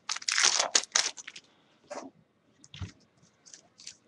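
Baseball trading cards flipped through by hand: a quick run of papery swishes and slides in the first second, then a few soft taps and clicks.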